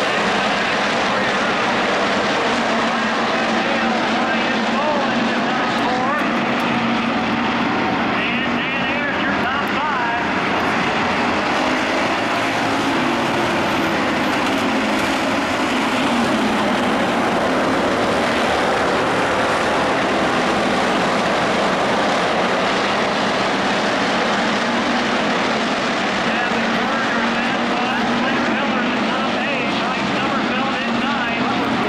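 A field of dirt-track hobby stock cars racing, their engines running hard together, with engine notes rising and falling as cars pass through the turns.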